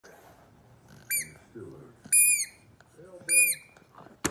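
Rubber squeaky dumbbell toy squeezed in a corgi puppy's jaws: three short, high squeaks about a second apart, each dipping slightly in pitch at the end, the last two the loudest.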